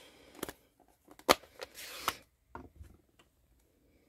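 A few light plastic clicks and taps, the loudest about a second in, as a plastic ink-pad case is opened and a clear acrylic stamp block is handled. There is a brief soft rustle around two seconds in.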